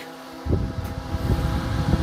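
Airflow from an ATEngeus 8-inch battery-powered desk fan on its top speed (four) blowing straight onto a lapel microphone: a low, gusty wind rumble that starts about half a second in.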